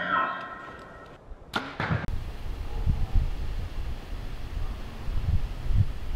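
Intro music fading out, then an arrow sound effect about a second and a half in: a quick whoosh and sharp hit with a short ringing tail. After it comes an outdoor hiss with an irregular low rumble and occasional low thumps.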